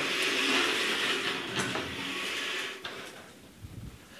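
A steady scraping, sliding noise with a few light knocks, like something being slid or dragged across a surface while studio equipment is set up. It stops about three seconds in.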